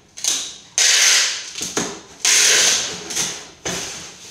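Packing tape pulled off a handheld tape gun across a cardboard box: two long strips unrolling, about a second in and again past the middle, with shorter rasps between as the tape is pressed down and cut.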